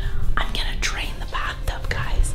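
A young woman whispering close to the microphone, in short breathy phrases over a steady low rumble.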